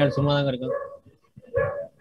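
A man's voice over a video-call connection, trailing off under a second in, followed by a short sound about a second and a half in.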